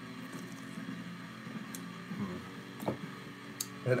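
A low steady hum with a few faint, sharp clicks spread through the pause, from an aluminium beer can and a glass being handled as the can is picked up to pour.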